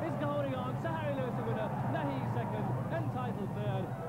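A man's voice commentating without a break over a steady low hum.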